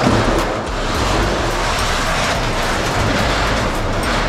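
Long-span steel roof sheet being dragged across steel roof purlins overhead: a loud, continuous metallic rumble and scrape studded with many small knocks.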